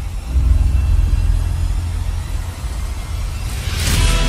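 Trailer sound design: a loud, deep, steady rumbling drone with faint held tones above it, swelling into a rising whoosh near the end that lands on a hit.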